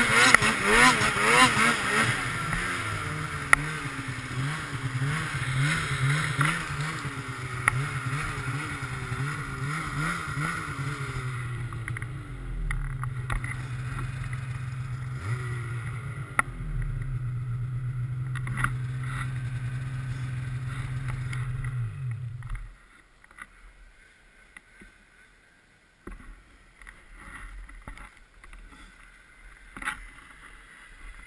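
Polaris snowmobile engine revving up and down as the sled ploughs through deep powder, the pitch rising and falling repeatedly. About three-quarters of the way in the engine cuts out, leaving only faint rustles and knocks.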